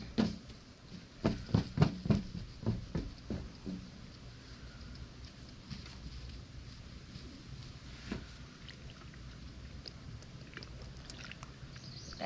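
Gloved hands scrunching a bleach-damp polyester-cotton T-shirt into a ball on a glass tabletop: a burst of rustling, rubbing and light knocks for the first few seconds, then quieter, scattered handling noises over a steady low rumble.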